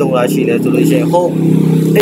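A man's voice: a few quick words, then a long, steady, low-pitched held sound that runs under more brief speech.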